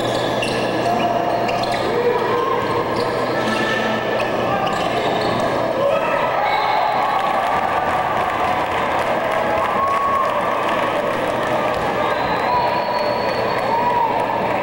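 Spectators and players in a gymnasium during a volleyball rally: many voices shouting and calling at once, with a few sharp thuds of the ball being struck, over a steady low hum.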